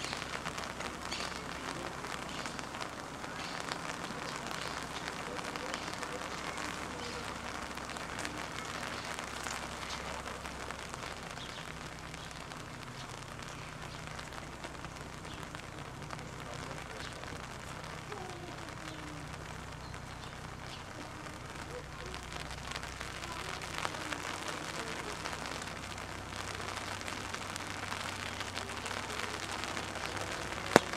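Steady rain falling, an even hiss of drops.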